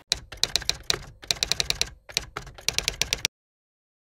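Typing sound effect: three quick runs of keystroke clicks as text is typed out on screen, cutting off suddenly after about three seconds.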